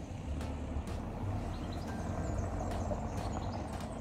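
Outdoor ambience with wind rumbling irregularly on the microphone, a steady background hum and a few faint high bird chirps.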